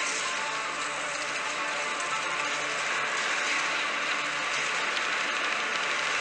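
The instrumental opening of a homemade song recording playing back: a dense, steady, hissy wash with a held chord, starting abruptly, before the vocals come in.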